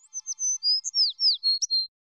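Bird-chirp sound effect: a quick run of high, clean chirps and whistles, several sliding down in pitch, lasting under two seconds and cutting off abruptly.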